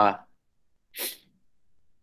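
The end of a man's drawn-out "uh", then a single short, sharp breath noise about a second in, with quiet around it.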